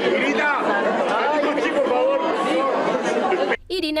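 Many voices talking over one another in a steady babble of chatter. It cuts off abruptly near the end, and a single voice starts narrating.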